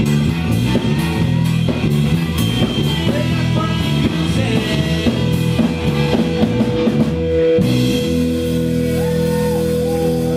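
Live pub band playing a cover song on drum kit, electric guitars and bass. About seven and a half seconds in, the drums drop out and the band holds sustained notes.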